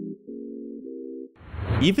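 A steady, low, held tone with several pitches stacked together. It breaks off briefly twice and stops about one and a half seconds in. A voice then begins over background music.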